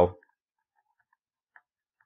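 Faint, sparse ticks of a stylus tapping a tablet screen while handwriting, with one sharper tick about one and a half seconds in.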